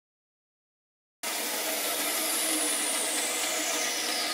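Bandsaw running, a steady mechanical rushing with a high whine that falls steadily in pitch. The sound comes in suddenly about a second in, after near silence.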